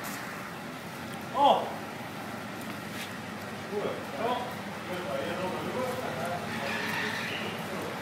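Faint, indistinct voices talking in the background, with one louder short vocal sound about a second and a half in.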